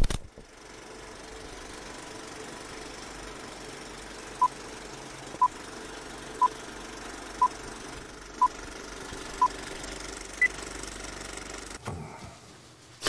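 Old-film countdown leader sound effect: a steady film-projector rattle and crackle, with a short beep once a second, six times, then one higher-pitched beep.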